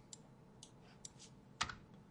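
A few faint, separate keystrokes on a computer keyboard as a part number is typed into a text field, the loudest about one and a half seconds in.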